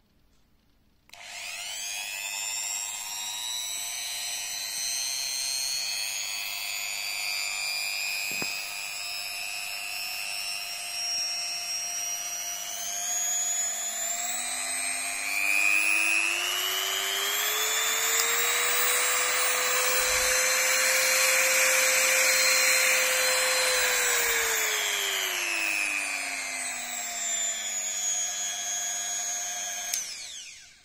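130 W handheld rotary multi-tool (multi-grinder) switched on about a second in, its small motor whining as it runs free without load. The pitch climbs as the speed is turned up, holds high for several seconds, then drops back down before the tool stops at the very end.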